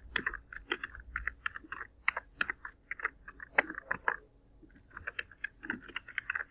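Typing on a computer keyboard: a quick, irregular run of key clicks, a few of them louder, with a pause of about a second near the end before the typing starts again.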